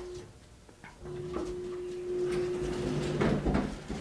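Elevator cab's single-speed sliding doors moving, the door operator motor giving a steady hum. The hum stops just after the start, comes back about a second in, and grows louder in the last second.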